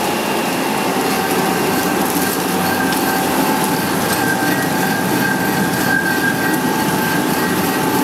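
LFQ film slitting and rewinding machine running at speed, its rollers and shafts turning with a loud, steady mechanical noise and a faint steady high whine.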